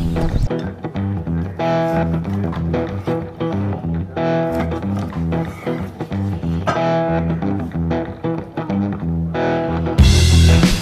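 Background music: an instrumental with plucked guitar over bass guitar, playing a phrase that repeats every two to three seconds.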